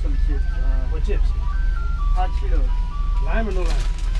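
Ice cream truck's chime playing a simple electronic jingle, one plain note after another, over a low steady hum.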